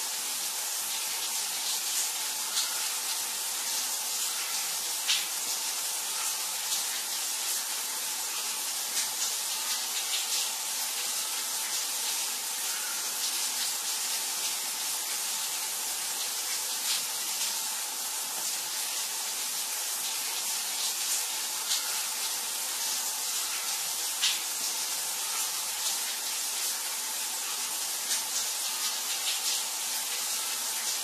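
Shower running: a steady hiss of water spray, broken now and then by brief sharper splashes of droplets.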